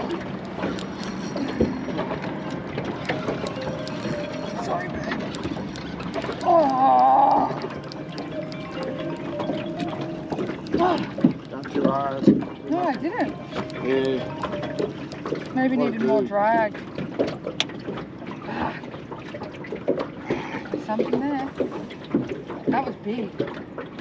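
Indistinct voices talking now and then over a steady background hum.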